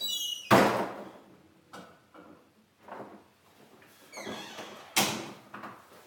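Pantry door being handled: short high squeaks, then a knock about half a second in; about five seconds in, a door swings shut with a squeak and a sharp thud.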